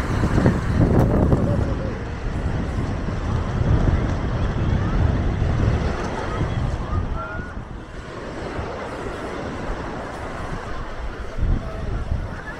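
Small waves washing onto a sandy shore with wind rumbling on the microphone, heaviest in the first half and easing after about eight seconds. Faint voices of people on the beach can be heard in the background.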